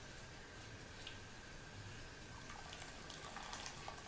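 Hot water being poured from a stainless insulated jug into a glass bowl of dissolving jelly, faint, with a few light clicks from handling the jug in the second half.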